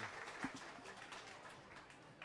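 Faint background hiss that fades slowly, with one faint click about half a second in.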